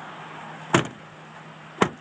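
Driver's door of a 2008 Chevrolet HHR being shut: two sharp thuds about a second apart, over a steady low hum.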